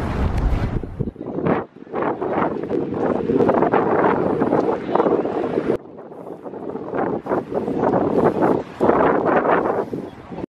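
Wind buffeting the camera's microphone in uneven gusts, heaviest and lowest at the start, with an abrupt break about six seconds in.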